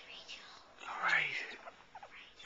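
A person whispering softly: one short whispered phrase about a second in.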